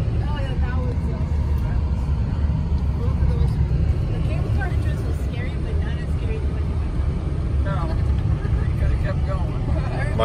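Steady low rumble of a car's engine and tyres heard from inside the cabin while driving along a winding road.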